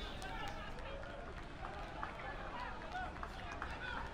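Faint open-air field ambience at a cricket ground, with distant players' voices calling and a few light knocks.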